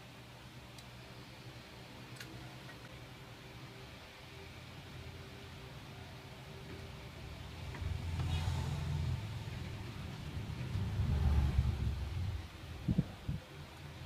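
Quiet handling of a clear plastic container and steel wire. In the second half a low rumble swells twice, and two short knocks come near the end.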